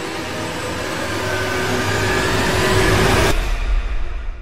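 A swelling whoosh sound effect: a rush of noise with a faint hum in it grows louder for about three seconds. Then the hiss cuts off suddenly, leaving a deep low rumble near the end.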